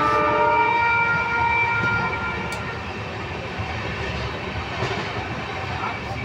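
A train horn gives a long blast of several tones that fades out about two and a half seconds in, over the steady rumble of a moving train heard from inside a carriage.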